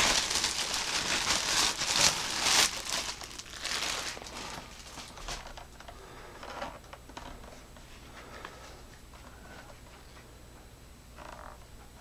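Clear plastic bag crinkling as it is pulled off a portable speaker, loudest over the first three seconds, then thinning to a few faint rustles.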